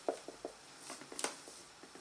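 Craft knife blade cutting into a thin clear plastic shampoo bottle: a few faint clicks and crackles of the plastic, the sharpest a little over a second in.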